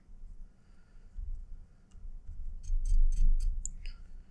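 Nylon paracord being handled and pulled through a knot by hand: low rubbing and bumping from about a second in, with a run of small clicks and ticks in the last second and a half.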